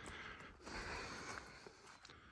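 Faint hard breathing of a man walking uphill, two breaths, then the sound cuts to silence near the end.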